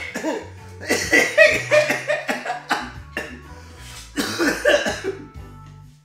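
Two bouts of harsh coughing from inhaling bong smoke, over background music with a steady stepped bass line.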